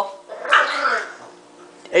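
English bulldog puppy giving one short grumbling vocalization about half a second in, lasting under a second.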